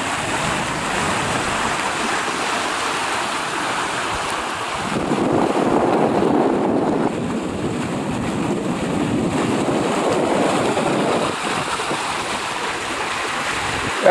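Wind buffeting the microphone over the rush of water along a sailing trimaran's hulls, a steady noise that swells for several seconds midway.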